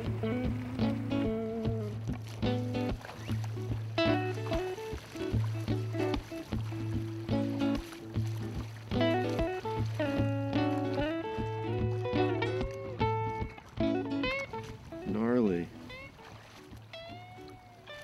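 Background music: short melody notes over a steady low bass note, growing quieter in the last few seconds, with a few sliding tones near the end.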